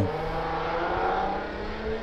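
Motor vehicle noise in the background, swelling slightly about halfway through and then easing, over a faint steady hum.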